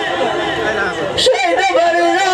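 A man's voice amplified through a microphone and PA, in a spoken, reciting delivery rather than held sung notes.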